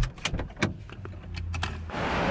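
A string of short, sharp clicks and knocks from a car, as of doors, latches and belts being handled, over a low rumble in the middle.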